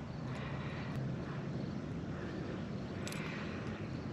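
A faint, steady low engine drone, with a light click about three seconds in.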